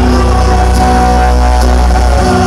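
Live band playing through a PA system: a male singer holds one long note over guitars and a steady, heavy bass.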